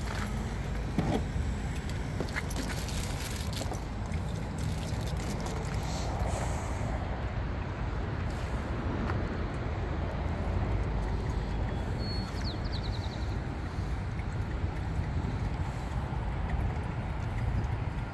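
Steady low outdoor rumble of background noise, with a few faint clicks in the first seconds and a brief high chirp about twelve seconds in.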